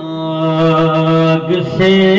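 A man's voice singing a naat, holding one long steady note for about a second and a half, then moving to a new pitch near the end.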